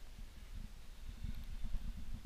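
Low rumbling with many soft, irregular bumps, the kind of handling or movement noise picked up by the microphone; no clear event stands out.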